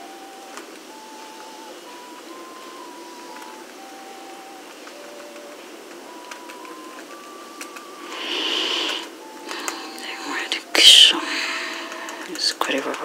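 A faint melody of slow single held notes plays. Over the last four seconds come paper rustling and crinkling with sharp clicks, loudest about eleven seconds in, as a small paper sachet is handled and torn open over a cup.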